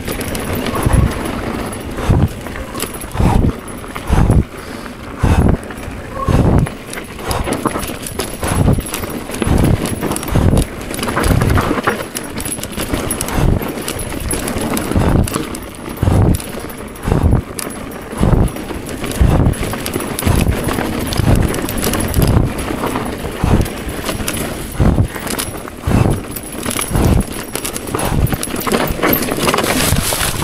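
Mountain bike ridden fast down a rough dirt singletrack: a steady rattle of the bike over the ground, with low thumps every half second to a second.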